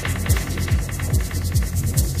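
Psytrance track: a driving kick drum, each beat dropping in pitch, about two beats a second over a continuous low bass, with steady high hi-hat ticks above.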